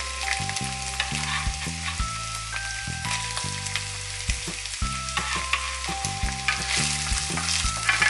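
Chopped onion and minced garlic frying in olive oil in a pan, a steady sizzle as the onion goes into the hot oil. Soft background music with held melody and bass notes plays under it.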